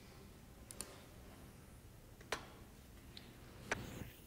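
A few faint, sharp clicks from a laptop, spread out over a few seconds, as text is entered into a web form.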